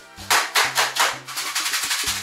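Background music with a bass line and a steady shaker-like beat of about three or four strokes a second.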